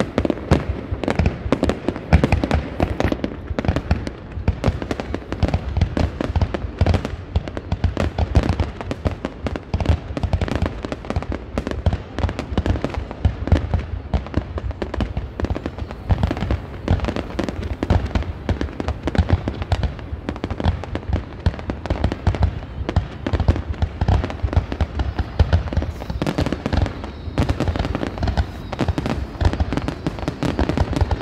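Aerial fireworks display: a continuous rapid barrage of shell launches and bursts, the reports coming many times a second without a pause.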